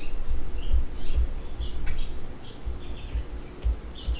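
Stylus drawing on a tablet: a string of dull low knocks from the pen strokes, with short faint high squeaks of the pen tip on the screen.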